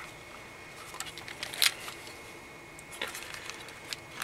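Hands handling a Polaroid SX-70 Sonar folding camera as it is collapsed shut: light rubbing and tapping on the plastic and metal body, with one sharp click partway through.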